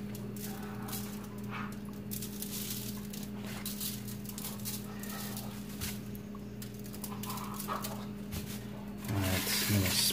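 Plastic seasoning shaker shaken over raw meatloaves, the dry rub rattling in faint scattered bursts over a steady low hum. A louder voice-like sound comes in near the end.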